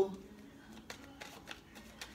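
Deck of tarot cards being shuffled by hand: a soft rustle of cards with a few light clicks.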